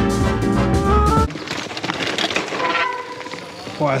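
Swing-style brass music that cuts off suddenly about a second in. It gives way to the rushing noise of a mountain bike ridden along a forest dirt trail.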